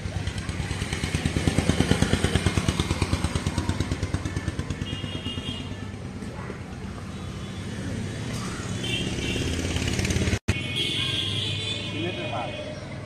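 Yamaha RX115 two-stroke single-cylinder motorcycle engine running on its stand in a steady pulsing idle. It swells louder for a few seconds about a second in, then settles, with a split-second break in the sound about ten seconds in.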